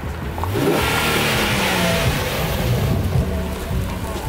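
A Nissan 370Z's 3.7-litre V6 accelerating past, its engine note rising and then falling away. A rush of wind and tyre noise swells from about half a second in.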